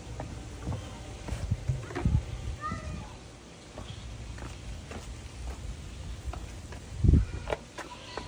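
Scattered knocks and handling noises over a low rumble, with a brief chirp near three seconds and one loud thump about seven seconds in.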